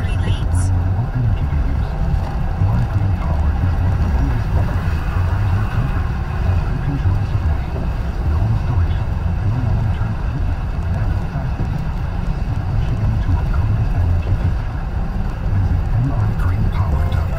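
Road noise inside a car's cabin at highway speed: a steady low rumble of tyres and engine. A short hiss sounds in the first half-second.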